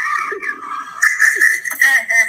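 Laughter, with a high, wavering pitch.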